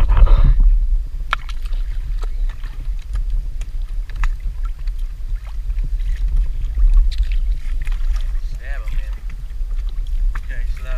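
Wind and water noise on a kayak-mounted camera microphone at sea: a steady low rumble with a loud bump or gust right at the start. Scattered sharp clicks and knocks from handling the rod and gear run through it, with brief indistinct voices near the end.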